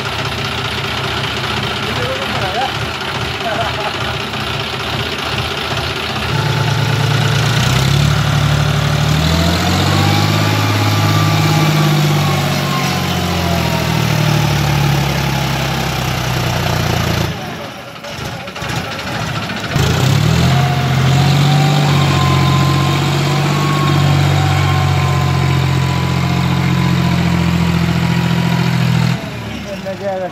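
John Deere diesel tractor engine running, first at a lower steady speed, then revving up and down under load from about six seconds in as it reverses a loaded trolley. The engine eases off for a couple of seconds a little past the middle, then pulls hard again.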